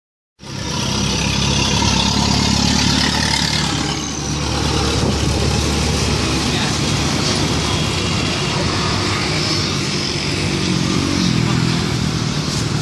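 Motor vehicle engine running close by, a steady low hum that is loudest for the first four seconds and then eases, over general street noise.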